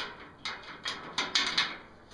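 A handful of light metal clicks and knocks from a homemade hot rod door hinge being wiggled by hand, the hinge rattling in pin holes made with a little play up and down.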